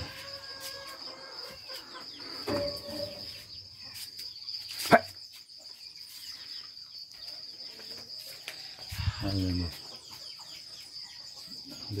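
Insects chirring in a steady high drone. There is one sharp click about five seconds in, and short low vocal sounds come twice.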